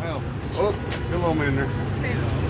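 Indistinct chatter from a gathered crowd over a steady low rumble.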